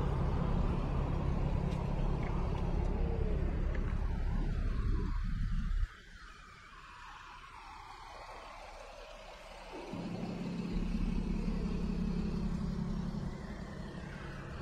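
City street traffic rumbling, with an articulated city bus running close by. The rumble drops off suddenly about six seconds in, and a steady low engine hum comes back as the bus draws alongside near the end.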